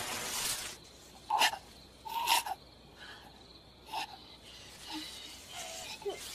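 A person's short, strained gasps and cries, three sharp ones about a second and a half, two and a half and four seconds in, after a breathy rush at the start: sounds of pain and struggle.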